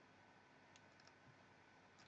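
Near silence: room tone, with a few very faint clicks about three-quarters of a second and a second in.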